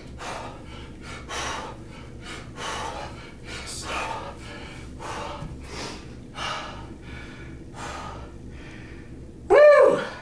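A man breathing hard and fast, winded from high-intensity kettlebell swings, in a quick run of loud breaths. Near the end comes one short, loud voiced exclamation.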